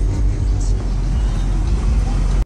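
Heavy bass from a car audio system of twelve 12-inch JBL Blazer subwoofers in a fourth-order bandpass box, playing loud and steady.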